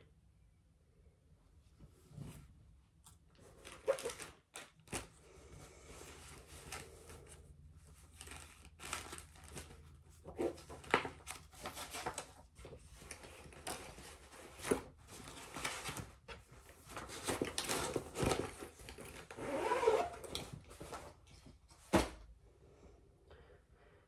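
Rustling and crinkling of cross-stitch projects being handled and swapped, with scattered light clicks and a sharp knock near the end.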